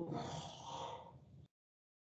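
A faint breath, then dead silence from about one and a half seconds in, where the audio cuts out completely.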